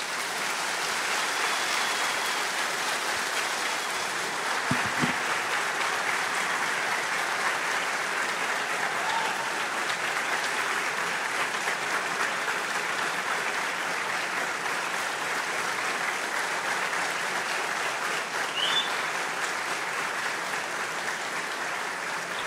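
Audience applauding steadily for a long stretch, breaking off abruptly at the end.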